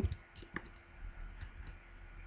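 Computer keyboard being typed on: a handful of soft, irregularly spaced key clicks.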